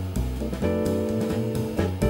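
Small jazz group playing live: upright double bass plucked under a drum kit, with a saxophone holding sustained notes.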